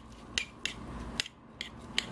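Metal spoon clinking against a ceramic bowl while stirring a moist crab meat stuffing: about five sharp, irregularly spaced clinks with soft scraping in between.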